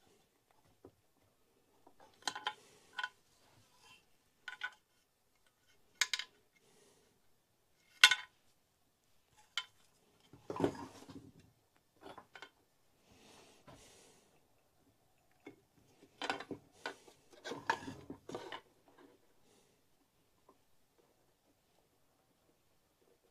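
Metal parts and hand tools clinking and tapping against a chainsaw's housing as it is worked on by hand: irregular sharp clinks, the loudest about eight seconds in, with short bouts of scraping and handling noise between them.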